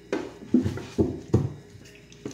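Wet squelches and slaps of a soapy sponge and hands scrubbing raw whole chickens over a sink: four short sharp sounds about half a second apart.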